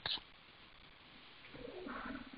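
Quiet room hiss, with a faint, short, low-pitched call beginning about one and a half seconds in.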